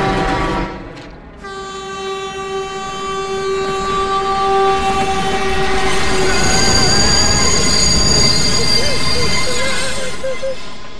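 Diesel locomotive horn blaring in two long blasts with a short break about a second in. In the second half a rising, rushing rumble of the train builds, with high steady squealing over it like locked wheels or brakes on the rails.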